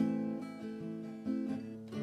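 Acoustic guitar strumming chords, with a strong strum at the start and another a little past the middle, the chords ringing on between them.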